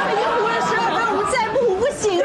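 Speech only: several voices chattering at once, women among them.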